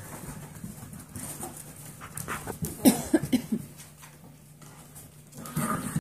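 A seven-week-old Golden Retriever mix puppy at play gives a quick run of about five short barks about three seconds in, with scattered clicks of its claws on the hard floor and another short call near the end.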